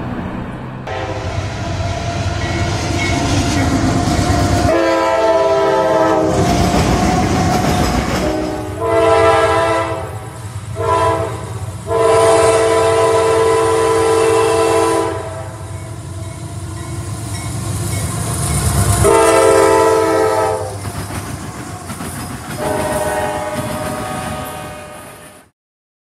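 Diesel locomotive's multi-chime air horn blowing the grade-crossing signal, long, long, short, long, then two more long blasts, over the rumble and rail clatter of a fast-moving train.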